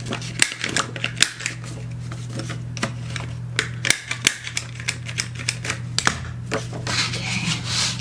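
Handheld corner-rounder punch clicking repeatedly as it rounds the corners of a sheet of cardstock, with paper handling between the clicks.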